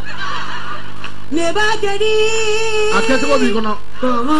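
A voice holding long, wavering sung notes from about a second in, after a short noisy stretch at the start.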